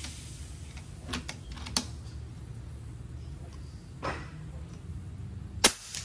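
FX Impact .30 PCP air rifle: metal clicks as its side lever is worked a little over a second in, then one sharp, suppressed shot of a 44-grain slug near the end.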